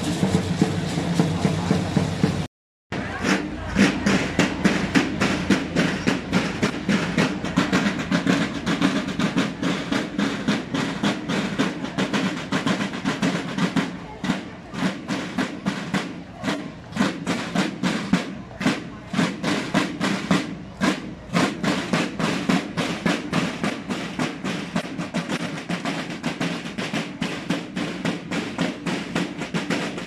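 Marching band's drums playing a fast, steady cadence of rapid strokes, starting after a brief break in the sound near the start.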